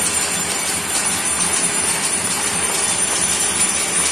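Many hand bells ringing together from the surrounding buildings, a dense, steady clamour with no break.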